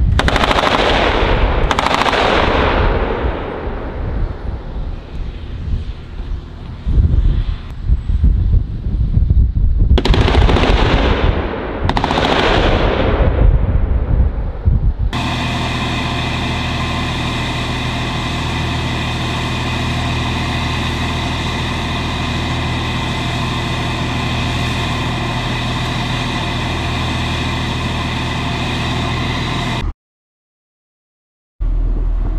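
Sgt Stout (M-SHORAD) Stryker firing: four loud launches in two pairs, each pair's shots about two seconds apart, each dying away in a long falling rush over a low rumble. From about halfway the Stryker's diesel engine idles steadily.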